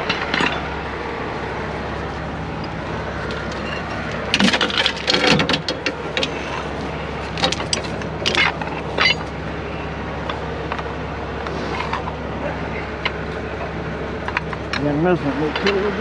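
A heavy steel recovery chain clinking and rattling as it is handled, in two runs of metallic clinks about four and eight seconds in. A steady low idle of truck engines runs underneath.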